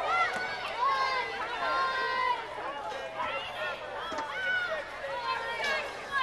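Several spectators' voices talking and calling out, overlapping at times, with no words clear enough to make out.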